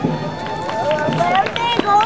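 An announcer speaking over a public-address system.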